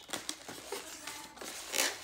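Inflated latex twisting balloon rubbing under the hands as it is twisted, in short scratchy bursts, the loudest near the end.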